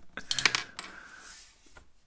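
Plastic toy dragon's shooter firing its orange flame missile: a quick cluster of sharp plastic clicks and clatter about half a second in as it launches and the piece lands on the tabletop.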